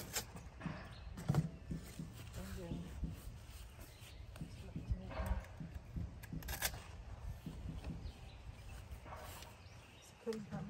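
A woman talking quietly now and then, with rustling and a couple of sharp crackles as large banana leaves are handled, one near the start and one past the middle.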